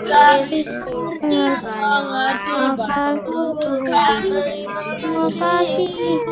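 A child's voice singing an Indonesian children's song about a teacher, with a music backing track, steady throughout.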